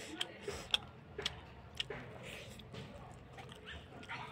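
Close-up eating sounds: about half a dozen sharp clicks and smacks in the first two seconds, then a quieter stretch.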